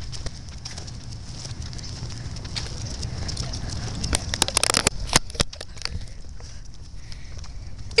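Steady low rumble and handling noise on a handheld camera's microphone while walking, with a flurry of crackling clicks from about four to five and a half seconds in as the camera is moved.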